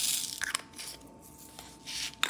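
A short burst of crinkling and rustling as paper and plastic film are handled at the diamond-painting canvas, followed by a few small clicks about half a second in and again near the end.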